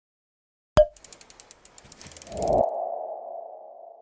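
Logo-animation sound effects: a sharp hit, a quick run of ticks, then a swell into a held ringing tone that slowly fades.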